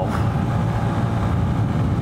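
Small motorcycle's engine running steadily at a cruising speed of about 74 km/h, with road noise and no change in pitch.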